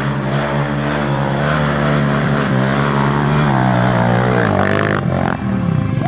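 Off-road trail motorcycle engine running hard under load as it climbs a steep hill, its pitch wavering and rising near the end, then cut off abruptly about five seconds in.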